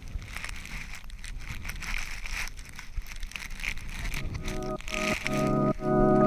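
Faint splashing of paddle strokes in calm water from a stand-up paddleboard. Background music with held, pulsing chords comes in about four and a half seconds in.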